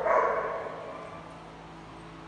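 A dog gives a short, noisy bark right at the start, which fades into quiet background noise.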